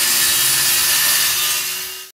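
Circular saw running steadily as it cuts through plywood along a clamped straightedge. The sound fades out near the end.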